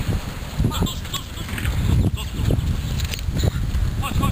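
Sideline sound of an outdoor football match: indistinct shouting voices of players or onlookers over a low, uneven rumble.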